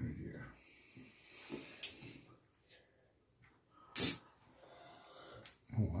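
A few brief soft taps as a small magnetic game stone is set down on a cloth-covered table, the loudest about four seconds in; the stone does not snap onto its neighbours.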